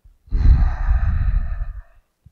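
A man's long, breathy sigh close on a clip-on lavalier microphone, the breath hitting the mic as a heavy low rumble; it lasts about a second and a half.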